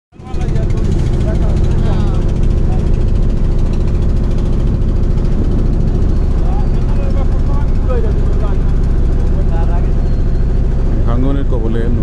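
A motorboat's engine running steadily with a constant low drone, while voices talk over it.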